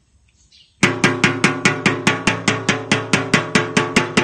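A metal basin beaten rapidly, about five even strikes a second, ringing between blows and starting just under a second in. It is a call to domestic ducks, which are being trained to come to the knocking.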